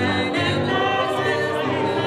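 Cast singing a musical-theatre number, several voices together in sustained notes, over keyboard accompaniment.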